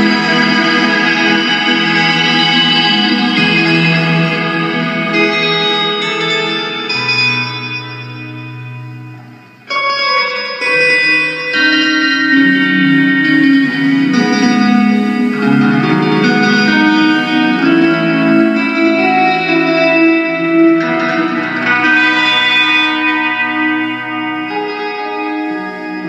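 Live music from electric guitar and keyboard played through effects, with sustained, reverberant chords. About a third of the way in the sound thins out and fades, then comes back suddenly at full level.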